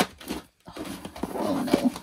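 Cardboard press-on nail boxes being pushed and squeezed into a packed drawer. A sharp tap comes at the start, then rustling and a couple of light knocks in the second half.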